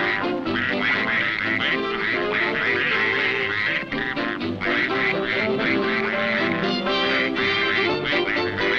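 Orchestral cartoon score, with a cartoon duck's quacking voice coming in repeatedly over the music.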